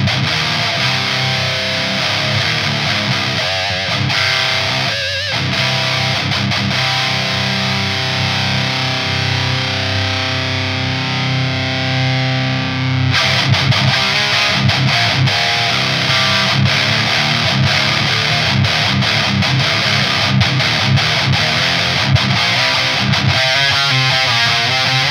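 Distorted electric guitar riffing: a Jackson DK2 through a Klirrton Oh My Goat distortion pedal into a Driftwood Mini Nightmare amp's clean channel. About halfway a chord is left ringing while the pedal's knob is turned, the tone changes abruptly, and the short, chugging riffs resume.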